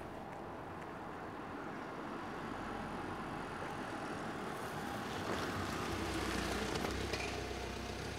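A police van driving up and pulling alongside: its engine and tyre noise grow steadily louder and are loudest about six to seven seconds in, with no siren.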